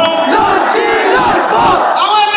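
A crowd of many voices shouting together, loud and overlapping.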